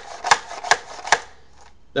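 Four sharp plastic clicks at an even pace, about two and a half a second, from the mechanism of a Buzzbee Predator spring-powered toy dart rifle being worked by hand.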